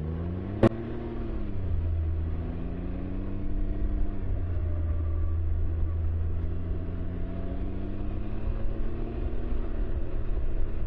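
Can-Am Ryker three-wheeler's engine pulling away from a stop and accelerating, its pitch rising, dipping about four seconds in, then climbing steadily again over a low road rumble. A single sharp click sounds about half a second in.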